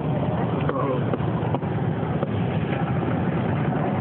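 A car driving through deep standing floodwater, heard from inside the cabin: a steady rush of water thrown up by the tyres over the low running of the car.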